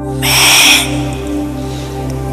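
Soft ambient new-age meditation music with steady held tones. About a quarter second in, a short, loud, harsh hissing burst cuts across it for just over half a second.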